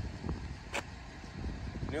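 A single sharp click about a second in, a phone camera's shutter sound as a photo is taken, over a low steady outdoor rumble.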